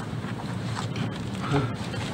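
Steady low room noise with faint paper rustling and a brief faint voice about halfway through.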